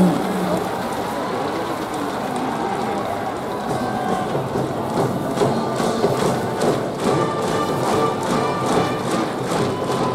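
A school brass band with drums playing a cheer song over a large crowd of voices in the stadium stands; held brass notes and regular drum hits become clear about four seconds in.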